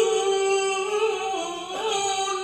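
A single voice singing one long, held note of an unaccompanied Islamic devotional chant (qasida), wavering slightly and dipping near the end.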